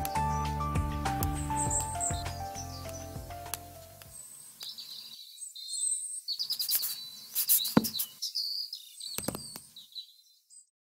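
Background music with piano-like notes fading out over the first four seconds, then a bird-chirp sound effect: short high chirps and twitters, with a few sharp clicks near the end.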